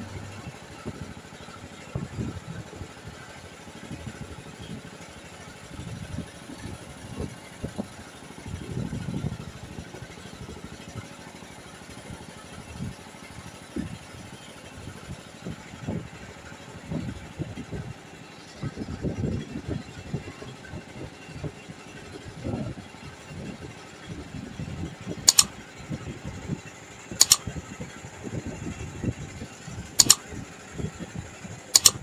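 Engine of a small wooden boat running under way across open water, with uneven low rumbling throughout. Near the end come two sharp clicks about two seconds apart.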